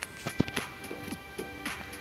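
Sound of an online lottery game during a ball draw: background music with a light ticking beat and sustained tones. A few sharp clicks come in the first half second.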